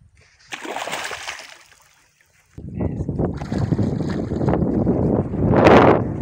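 A hooked bowfin splashing at the water's surface beside the boat, a burst of splashing from about half a second in. From about two and a half seconds on a louder rough rumbling noise takes over, loudest just before the end.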